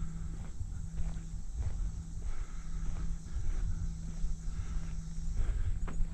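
Footsteps crunching on a gravel track at a walking pace, over a steady high drone of cicadas (locally called locusts).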